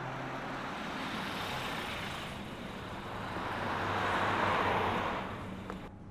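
Road traffic noise that swells to its loudest about four to five seconds in, then fades.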